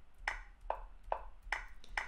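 Five short clicks in an even rhythm, a little over two a second, as moves are played one after another on a computer chess board.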